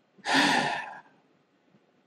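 A man's single audible breath, lasting under a second.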